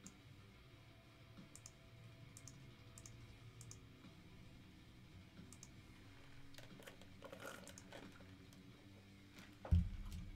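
Faint clicking and tapping of a computer keyboard and mouse, a few scattered clicks at first and a quicker run of them later, with one loud thump near the end.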